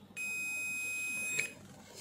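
Fluke 179 multimeter's beeper sounding one steady, high beep of a little over a second as the micro switch closes the circuit across the probes: the switch contacts conduct, a sign that the switch is good.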